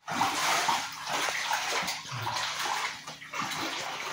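Footsteps wading through shin-deep floodwater indoors, the water sloshing and splashing with each stride in a repeated rhythm.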